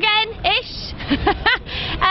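A woman's voice calling out and exclaiming excitedly in short raised bursts, with brief patches of hiss in between.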